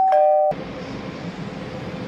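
A two-note falling 'ding-dong' chime, like an electronic doorbell, lasting about half a second with the background cut out beneath it, followed by a steady low background hum.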